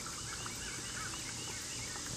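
Backyard songbirds calling: a quick run of short, arching chirps repeated several times a second, over a steady high hiss.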